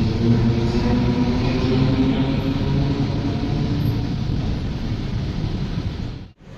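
Dense traffic of cars and motorbikes in a jam: a steady rumble with a low engine hum running through it.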